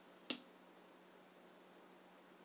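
A single sharp click about a third of a second in, then near silence with faint room tone.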